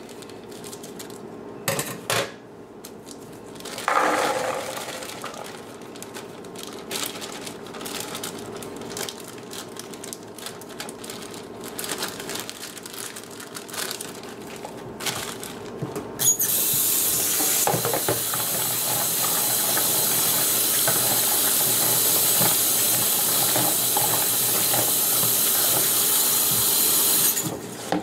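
Plastic cranberry bag being snipped open with scissors and crinkled as fresh cranberries are emptied into a plastic colander in a stainless steel sink. About halfway through, a kitchen tap starts running steadily over the berries to rinse them, then shuts off suddenly near the end.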